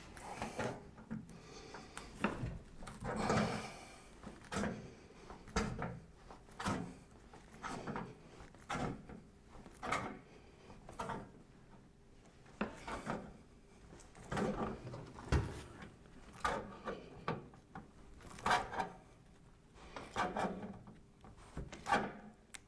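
Hand seaming tongs crimping the edge of a painted steel standing-seam panel in short strokes, each a brief scraping creak of sheet metal, roughly one a second. This is the slow pre-bending of the second fold of a double standing seam.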